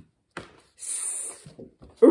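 A woman's voice drawing out the phonics sound "sss" for the letter s, a steady hiss lasting about half a second in the middle.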